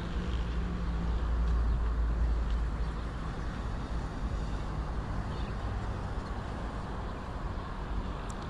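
Road traffic on a city street: a low rumble of passing vehicles that swells over the first couple of seconds and then eases off.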